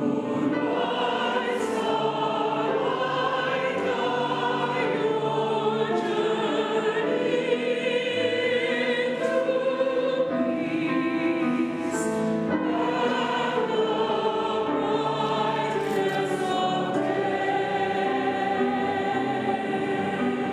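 Congregation and choir singing a slow hymn together, many voices in unison.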